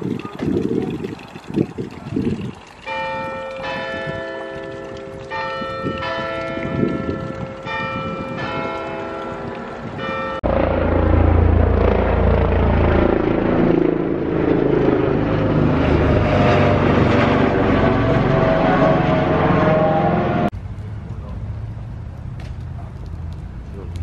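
Church bells ringing from a clock-tower steeple. From about three seconds in, bells strike one after another with clear, lingering tones. About halfway through, the sound jumps suddenly to a louder, dense peal of several bells ringing together, which cuts off about a second and a half before the end.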